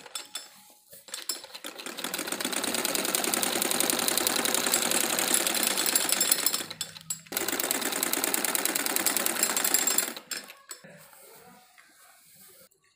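Domestic sewing machine stitching through cloth with a fast, even rattle of needle strokes, running in two spells with a short stop between them. It falls quiet with a few light clicks near the end.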